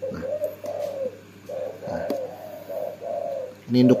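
A steady series of short, low cooing calls in the background, repeating a few notes a second at an even pitch, from a calling animal.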